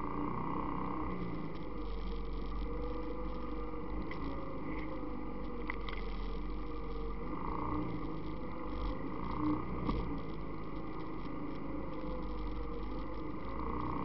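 ATV engine running at low trail speed, its pitch rising and falling gently with the throttle, picked up by a camera riding on the quad. A few brief knocks come through, the loudest about nine and a half to ten seconds in.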